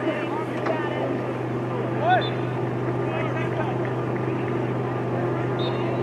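Indistinct distant shouts and calls from soccer players across an open field, the loudest one about two seconds in, over a steady low hum.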